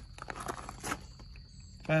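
Faint crunching and shuffling on gravel underfoot, with a louder crunch near the end, over a steady thin high-pitched tone.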